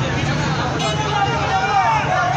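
Crowd of men shouting and talking over one another in a dense babble, with a steady low hum underneath.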